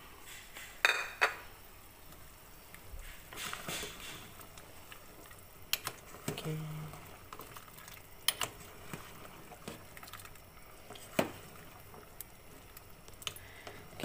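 Ginger pieces going into a pot of simmering soup, then a metal ladle stirring it, clinking sharply against the metal pot about five times over the faint bubbling of the soup.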